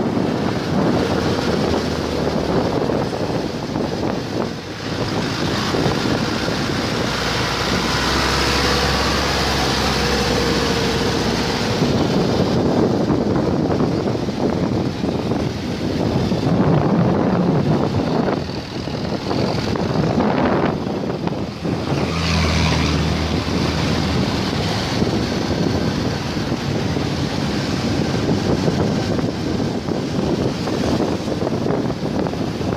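City road traffic heard from a moving vehicle, with wind rushing on the microphone. Deeper engine hums rise about 7 seconds in and again about 22 seconds in.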